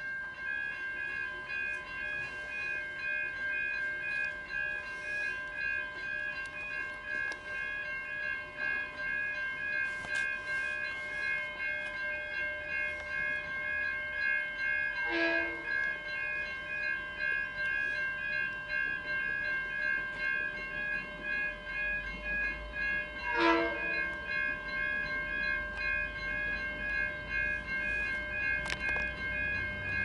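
V/Line N class diesel locomotive approaching on an express, sounding two short horn blasts, about halfway through and again about three-quarters through, with a low engine rumble that grows near the end. Over it runs a steady ringing of several high tones, which starts suddenly at the outset.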